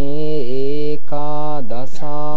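A male Buddhist monk chanting solo in slow, long-held notes, with a brief pause about a second in and a falling slide just before the end.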